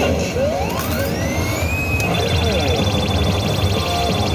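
High School of the Dead pachislot machine playing its sound effect as the ART bonus mode starts: a tone sweeping upward over about a second and a half, then a high steady tone pulsing rapidly for about two seconds. A steady low hum of the game hall runs underneath.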